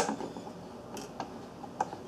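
Small screwdriver tightening the bottom screw of a Nest thermostat's plastic wall plate: a sharp click at the start, then a few light ticks.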